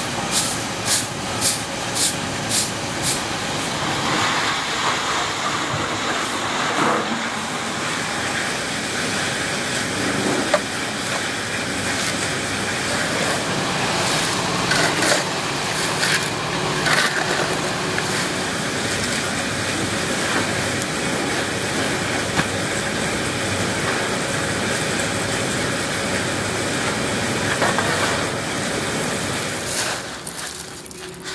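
A broom sweeping shredded plastic flakes across concrete, about two scratchy strokes a second for the first three seconds. This gives way to a steady noisy rustle with a few short rattles as the flakes are handled and pushed into a woven sack.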